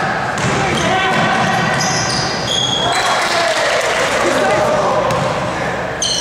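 Basketball bouncing on a hardwood gym floor, with short high-pitched sneaker squeaks about two seconds in and players' voices calling out across a large gym.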